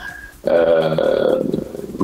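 A man's drawn-out hesitation sound, a level 'eeee' held for about a second and a half without changing pitch, starting about half a second in. It is a filler while he looks for his next words.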